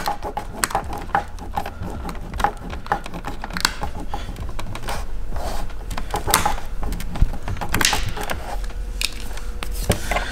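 Thumb pressing and rubbing adhesive vinyl tint film down onto a plastic fog light lens: an irregular run of many small clicks and rubbing noises.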